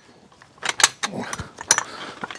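Hi-Lift jack's steel lifting mechanism being moved on its standard bar with the latch up, giving a few separate sharp metal clicks and knocks.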